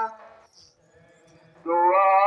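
A hymn being sung: one sung line ends at the start, there is a pause of about a second and a half, and the next line begins near the end.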